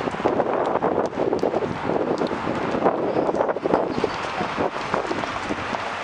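Busy city street noise with wind buffeting the camera microphone: a dense, uneven rush dotted with many small clicks and knocks.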